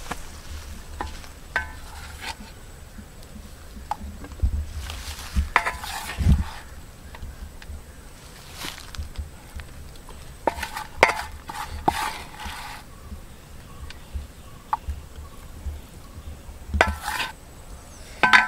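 Spatula scraping and knocking inside a steel bowl while cooked clam fry is scooped out onto a plate, in scattered short strokes with pauses between.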